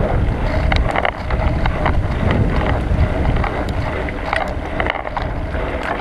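Wind buffeting the microphone of a bicycle-mounted action camera while riding, a steady low rumble, with scattered clicks and rattles from the bike.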